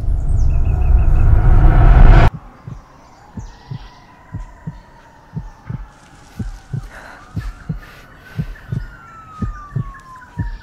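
A loud rushing noise swells for about two seconds and cuts off suddenly. A slow heartbeat follows, a pair of low thumps about once a second, with a faint tone slowly gliding in pitch and a few high chirps above it.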